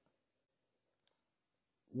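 A single faint, sharp click about a second in, against near silence.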